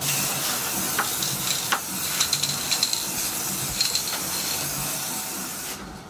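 Aerosol can of solvent-based satin spray varnish spraying in one long, steady hiss that cuts off shortly before the end, with a few faint clicks over it.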